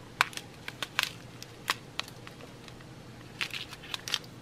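Small clear plastic bags of diamond-painting drills being handled, giving a few faint, scattered crinkles and clicks.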